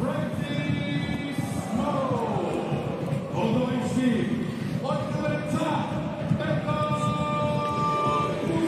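Football stadium crowd singing and chanting, many voices together in long falling phrases, with drumbeats underneath.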